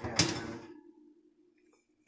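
A metal baking tray pulled out of a hot oven across its wire rack: one sharp clank about a fifth of a second in, a brief scrape fading within half a second, then a faint steady low hum that dies away near the end.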